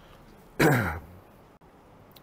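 A man clearing his throat once, a short rough sound about half a second in that falls in pitch.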